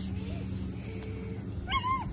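A border collie whimpering faintly with a thin, short whine, over a low steady background hum.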